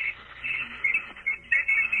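High, warbling chirping noise in the background of a phone-line call, running on steadily with a faint voice underneath.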